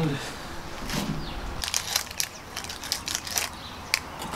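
Plastic packaging crinkling and crackling in short crisp rustles as solid fuel tablets are taken out of their packet.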